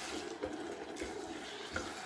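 Faint sizzling of onions and curd frying in a steel pot as they are stirred with a wooden spoon.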